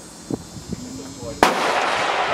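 A single rifle shot about one and a half seconds in, sudden and sharp, with a long echo trailing after it.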